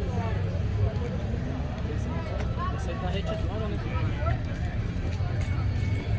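Background chatter of people talking at a distance, over a steady low rumble.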